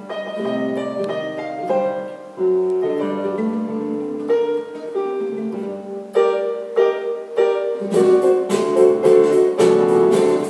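Instrumental duo of acoustic guitar and electronic keyboard playing with a piano sound. The notes are held and unhurried at first, then from about eight seconds in the playing grows busier and louder, with quick repeated notes.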